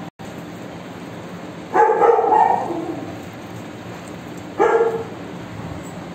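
A Doberman barks twice, eager for its lunch: a longer bark about two seconds in and a shorter one near five seconds.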